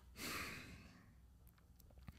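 A man's short, soft sigh into a close microphone, about half a second long.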